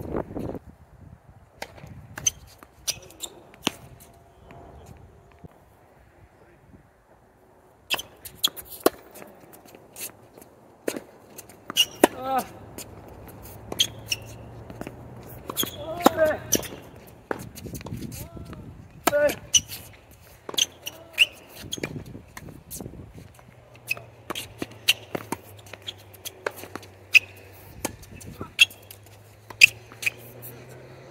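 Tennis balls struck by rackets and bouncing on an outdoor hard court during practice rallies: a string of sharp pops at irregular spacing. There are a few between points in the first seconds, and steady exchanges run from about eight seconds in. Short voice sounds from the players come between some of the strokes.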